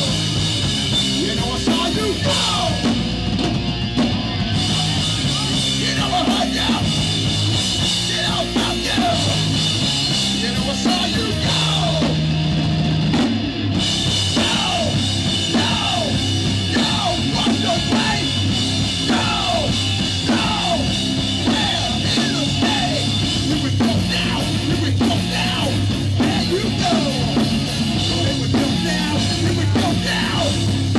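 Hardcore punk band playing loudly live, with distorted electric guitar, bass and drum kit, recorded from within the crowd at a small club.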